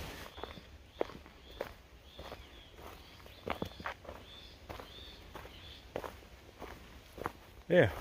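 Footsteps of a hiker walking a dirt and dry-leaf forest trail at a steady pace, a little under two steps a second.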